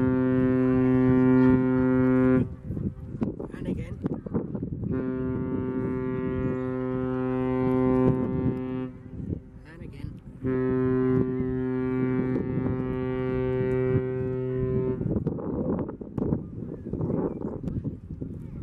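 The OOCL Hong Kong's ship's whistle sounds long, deep, steady blasts. One blast ends about two seconds in, then two more of about four seconds each follow, the last stopping about three seconds before the end.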